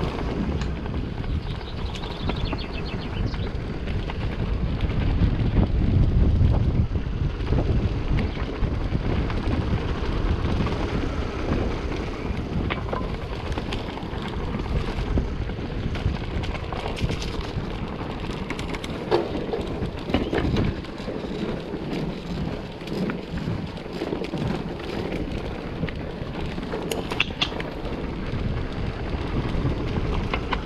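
Mountain bike riding over a stone-paved trail: wind buffeting the camera microphone and the tyres running over the stones, with scattered clicks and rattles from the bike. The low wind noise is strongest a few seconds in.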